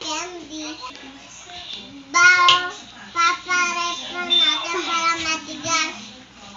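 A young child singing a tune, with long held notes, louder from about two seconds in.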